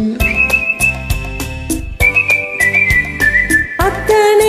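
A high whistled melody in long held notes, stepping down in pitch twice, over a karaoke backing track with a steady drum beat.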